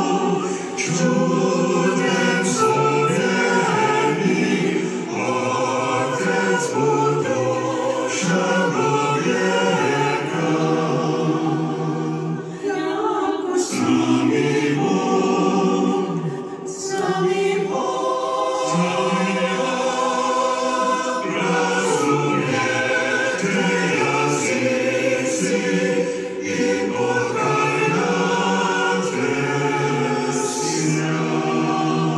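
A choir singing a hymn unaccompanied, several voices holding chords, with a few short breaks between phrases.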